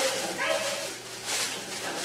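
A long shout from a karate class, held at one pitch for nearly a second, then a brief rushing noise a little past the middle.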